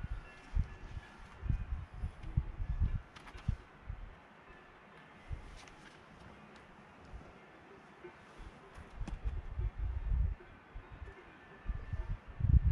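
Wind buffeting an outdoor camera's microphone in irregular low gusts, strongest in the first few seconds and again near the end, with a few faint clicks between them.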